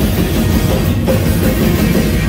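Loud live rock band with drums and amplified guitars, heard through a phone's microphone from inside the crowd. There is a brief dip about a second in.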